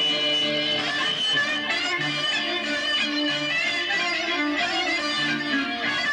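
Live Greek folk band playing a Sarakatsani dance tune: a clarinet carries the melody over electric guitar and harmonium, with low accompanying notes repeating underneath.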